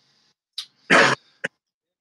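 A man coughs once, about a second in, with a short breath just before it.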